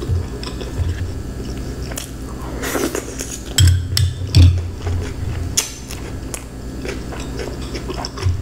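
Close-miked chewing and biting of food, with many small clicks and wet mouth sounds. There is a louder cluster of chewing noises a little past the middle, and a fork clicks against a bowl of coleslaw.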